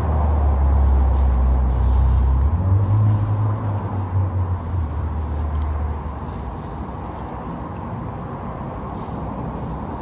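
Low rumble of a heavy road vehicle's engine, rising in pitch about two and a half seconds in and fading away after about six seconds, over steady background noise.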